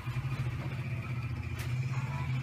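A steady low hum, like a motor or fan running, with a faint hiss above it and no words.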